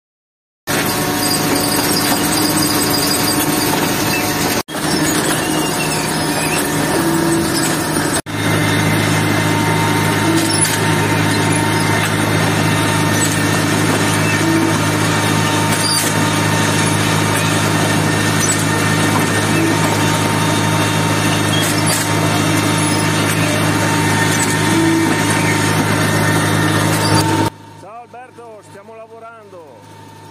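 Automatic tomato transplanter running: a loud, steady mechanical hum with a thin steady whine over it. The sound breaks off briefly twice and drops to a much quieter running sound near the end.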